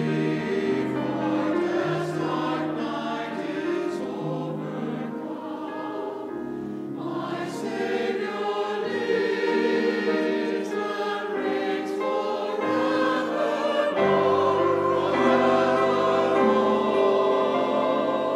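Mixed choir of men's and women's voices singing with grand piano accompaniment, growing louder about two-thirds of the way through.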